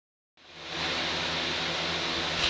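Steady hiss with a faint low hum, fading in during the first half second as the recording begins, then holding level.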